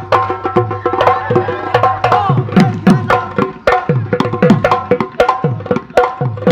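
Bihu dhol drumming in a fast, dense rhythm, its deep strokes dropping in pitch as the drum-head is pressed, with a held melody line over the beat.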